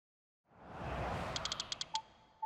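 Logo sound effect: a swelling whoosh, then a quick run of about seven small clicks, ending on a bright ding.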